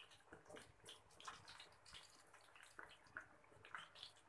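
Faint, irregular crackling sizzle of besan pakora batter frying in hot oil in a steel pan as spoonfuls are dropped in; the oil is only moderately hot, so the sizzle is gentle.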